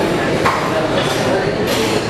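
Indistinct chatter of several voices in a large hall, with a light clink of steel serving dishes about half a second in.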